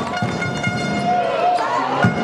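A horn sounding one steady, held tone with many overtones for most of the two seconds, over crowd voices and a few ball bounces in a sports hall.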